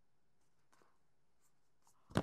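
Near silence, with a few faint brief scratches of tarot cards sliding against each other as they are drawn from the deck.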